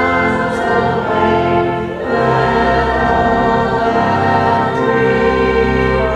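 Voices singing a hymn with organ accompaniment, in sustained chords that change about two seconds in.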